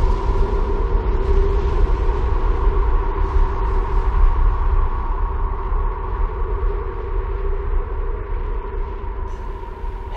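Continuous deep rumble of an explosion sound effect, with a steady droning tone held over it, easing off slightly near the end.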